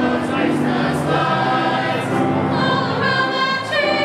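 A choir singing in several voices, holding long notes that change every second or so.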